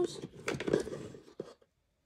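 A few light clicks and knocks of plastic ink-pad cases being handled while she searches through them. The sound fades out to silence near the end.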